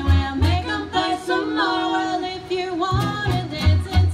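Live bluegrass played on fiddle and acoustic guitar. The guitar's strummed beat stops for about two seconds in the middle while held, sliding melody notes carry on, then the strumming comes back in.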